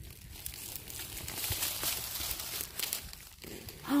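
Dry leaf litter rustling and crackling as a rotten log is rolled over on the forest floor.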